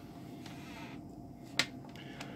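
Quiet room tone with a single short, sharp click about one and a half seconds in.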